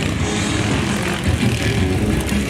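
Motorcycle engines running and revving on a dirt obstacle course, a dense steady drone with uneven pulses.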